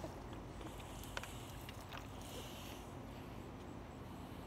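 Quiet background with a few faint, short clicks.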